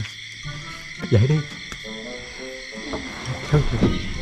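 Eerie background music of short held notes over several steady high-pitched tones, with a voice calling about a second in and more low voices near the end.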